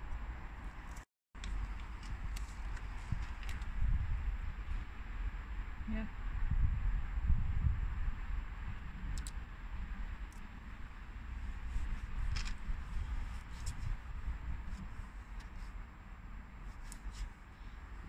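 Faint clicks and rustles of a vinyl sticker being peeled from its backing sheet and pressed onto a car's rear glass, over a low steady outdoor rumble. The sound cuts out completely for a moment about a second in.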